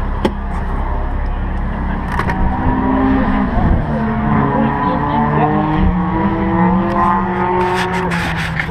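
A car door latch clicks open just after the start, then car engines run steadily, their pitch rising and falling a few times.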